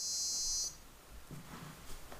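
Piezo buzzer on an Arduino Danger Shield sounding a shrill, high-pitched electronic tone for under a second, then cutting off sharply.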